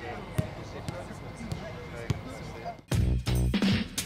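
Football kicks: a few sharp thuds of a ball being struck, over a faint outdoor background with distant voices. About three seconds in, loud music with a heavy pulsing beat cuts in suddenly.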